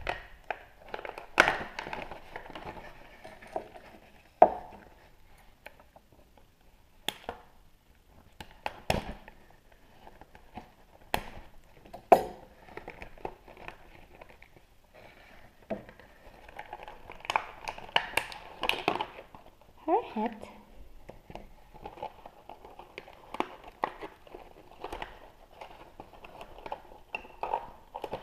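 Clear plastic blister packaging crinkling and crackling as a toy figure and its small accessories are worked out of a cardboard box, with scattered sharp clicks and taps.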